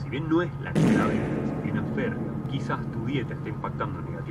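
Voices, broken about a second in by a sudden loud bang whose noisy tail dies away over about a second.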